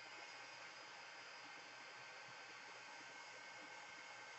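Near silence: a steady faint hiss of room tone.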